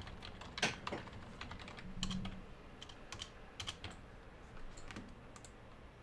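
Typing on a computer keyboard: irregular runs of key clicks, with a louder stroke about half a second in.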